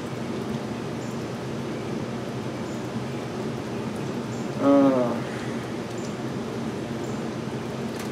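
Steady background hum of backyard ambience, with a few faint, short high chirps and one brief voice-like sound about halfway through.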